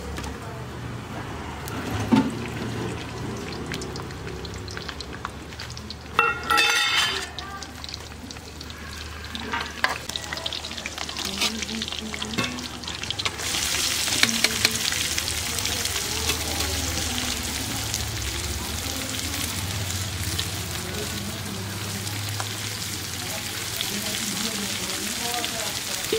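Chopped red onions tipped into hot oil in a kadhai over a wood fire, starting a loud, steady sizzle a little past halfway that continues to the end. Before that, clinks of steel utensils and a brief metallic clatter.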